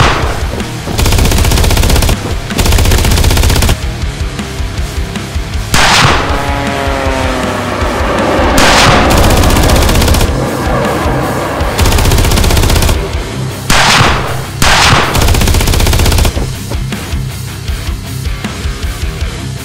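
Video-game automatic gunfire in long bursts of two to three seconds over music, with a few short rushing whooshes between the bursts and one falling tone partway through.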